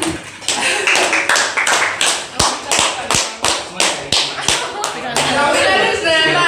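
A group clapping hands in a steady rhythm, about three claps a second, with voices calling out over it.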